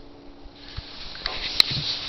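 A person sniffing, a drawn-out breath in through the nose, with a sharp click about one and a half seconds in.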